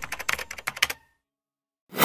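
Keyboard typing sound effect: a fast run of clicks that thins out and stops about a second in.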